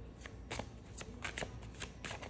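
A deck of tarot cards being shuffled by hand: a quick run of light, separate card clicks from about half a second in.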